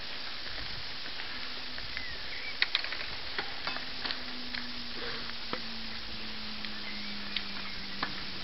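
Bicycle rolling along a rough forest trail: a steady hiss of tyres and moving air, with scattered sharp clicks and rattles as the bike goes over bumps. A couple of short chirps sound twice, and a faint low hum comes in about halfway.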